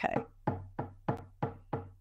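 Shamanic drumming: a drum struck in a steady, even beat about three times a second.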